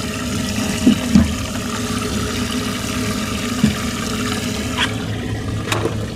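Water running and splashing steadily in a live-bait well while its pump circulates the water, with a low hum underneath. A couple of light clicks come near the end.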